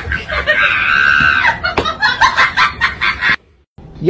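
A person's high-pitched scream lasting about a second, followed by excited laughing and chatter that cuts off suddenly near the end.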